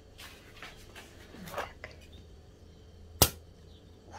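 Faint crinkling of plastic packaging, then a single sharp knock about three seconds in as a glass beer bottle is handled on the table.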